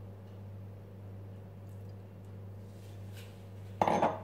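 Raspberries being dropped by hand into a plastic blender beaker, with a few faint soft clicks over a steady low hum. Just before the end comes one loud, short knock: the glass bowl set down on the counter.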